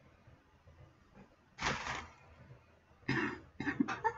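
A woman coughing from the heat of a spicy hot sauce she has just tasted. One cough comes about a second and a half in, then a louder fit of short coughs near the end.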